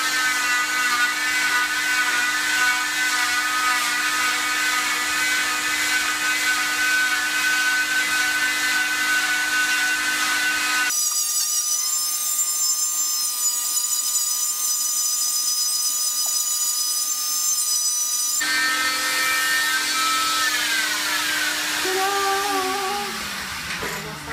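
Oscillating cast saw's electric motor running with a steady high whine as it cuts through an arm cast; the tone changes abruptly partway through. Near the end the saw is switched off and its pitch falls as the motor winds down.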